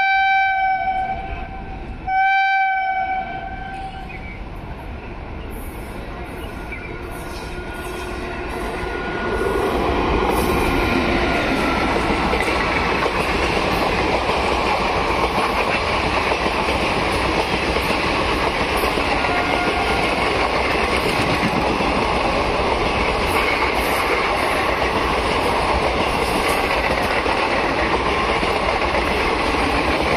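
Indian Railways express train: its electric locomotive sounds a long horn blast that ends about a second and a half in, then a second short blast. The approaching train's rumble then builds, and from about ten seconds in the coaches pass at speed with loud, steady wheel and track noise and clickety-clack.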